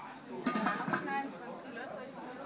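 Indistinct voices of people talking in a room, with a brief louder burst of sound about half a second in.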